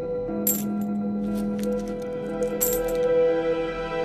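Coins dropping and clinking, a scattering of short metallic clinks, the loudest about half a second in and near three seconds in, over steady background music.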